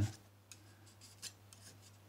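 Steel palette knife scraping and dabbing oil paint onto a painting board: a few faint scrapes and taps.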